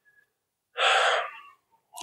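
A person draws one quick breath, a short breathy intake lasting under a second, about a second in.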